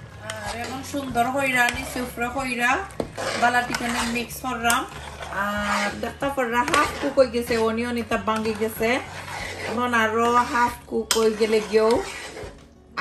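A metal spoon stirring and knocking against a large metal cooking pot of meat, with scattered clinks, under a woman's singing voice that carries on through most of it.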